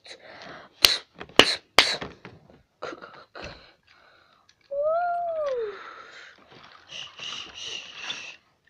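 Plastic toy trains clicking and knocking on plastic track as they are handled and one is pushed off, with three sharp knocks about a second in. About five seconds in comes a short voiced sound whose pitch rises and then falls, and near the end a brief whirring.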